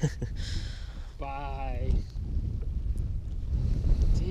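Wind buffeting the microphone as a steady low rumble, under a man's voice: a short laugh at the start, then a drawn-out vocal sound about a second in.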